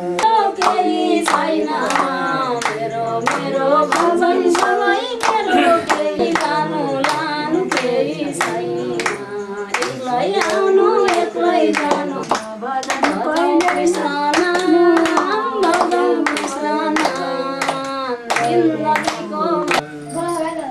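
A group singing a Hindu devotional song (bhajan), keeping time with steady hand claps at about two a second.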